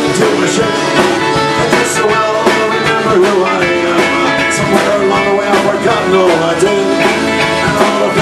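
Live Irish pub-rock band playing a song: strummed acoustic guitar, accordion and drum kit keeping a steady beat.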